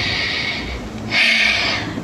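A woman's breathing, heard close: two audible breaths, the second louder, in a pause between halting, emotional sentences.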